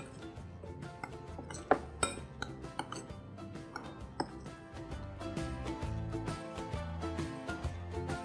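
Background music, with a few sharp clinks of a spoon against a glass mixing bowl as fish pieces are tossed in a spice marinade.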